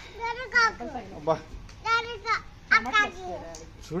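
Speech only: a young child's high voice and adults calling out in short, excited phrases.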